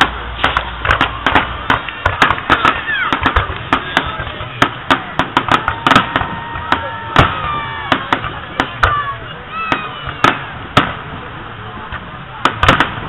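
Fireworks finale: a dense, rapid string of aerial shell bursts, several bangs a second, with some whistling pitch glides in the middle.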